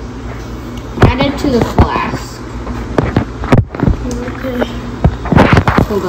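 Indistinct voices talking in short bursts, with a few sharp knocks of things being handled, over a steady low hum.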